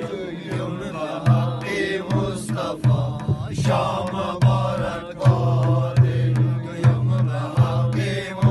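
A group of men singing a Wakhi welcome song together in a chant-like unison, accompanied by deep, repeated strokes on a large hand-held frame drum.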